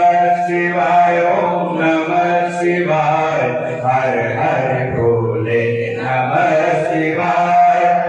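Sanskrit mantras chanted continuously in a steady, drawn-out recitation for a Rudrabhishek of a Shiva lingam.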